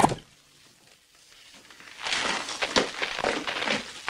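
A wooden artificial leg being smashed open: after a short silence, about two seconds of cracking and crunching with scattered sharp strokes.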